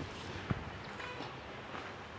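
Faint outdoor background noise, with one brief click about half a second in.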